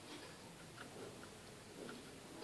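Faint, irregular small clicks of metal tweezers and a soldering iron tip touching a tiny component on a laptop motherboard during soldering, over low room noise.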